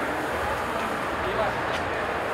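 Steady backstage background noise, an even hiss with faint distant voices murmuring now and then.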